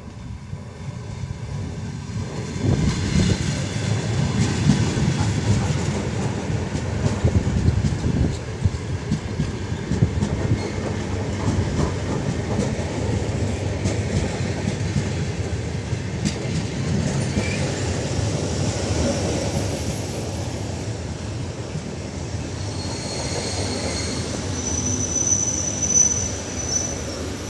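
ER9T electric multiple unit passing close by along a station platform: a steady low rumble of wheels and bogies on the rails that builds up a couple of seconds in and holds. Several high-pitched squeals from the wheels join in near the end.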